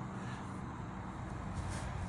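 Steady low background hum with no distinct events: no bat contact or other impact.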